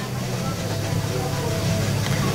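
A steady low hum of room background, even in level throughout.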